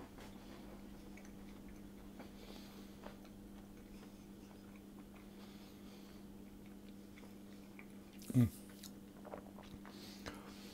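A person quietly chewing a mouthful of orange pistachio friand, a small almond-style cake topped with pistachios, with faint small crunches over a steady low hum. About eight seconds in comes one short voiced murmur that falls in pitch.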